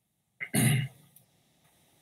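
A man clears his throat once, a short burst about half a second in.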